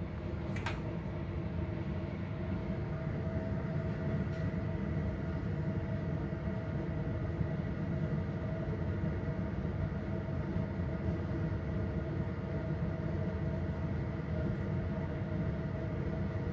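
Laboratory fume hood's exhaust fan running: a steady rumble with faint steady whining tones above it, and a brief click just after the start.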